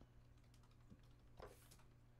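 Faint typing on a computer keyboard, a scatter of soft key clicks, with a short soft noise about one and a half seconds in.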